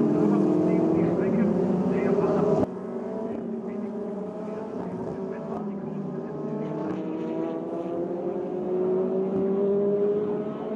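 Formula Renault 2.0 single-seaters' four-cylinder engines at high revs, rising in pitch as they accelerate. About a third of the way in the sound drops suddenly, then a single car's engine climbs in pitch and grows louder near the end.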